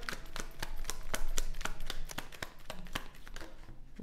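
Tarot cards being shuffled by hand: a quick run of light clicks and taps as the cards slap together, fewer of them near the end.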